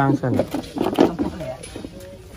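A voice speaking, with a few light knocks of a wooden pestle in a clay mortar.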